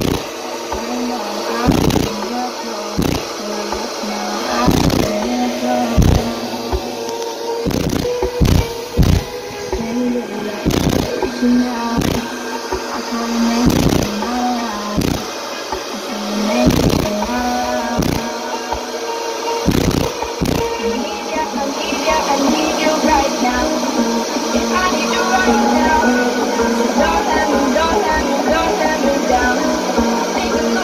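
Bass-heavy pop song played loud through a car audio system with two Rockville Punisher 15-inch subwoofers in the trunk. It has a heavy beat about once a second, which gives way about two-thirds of the way through to a denser, steadier passage.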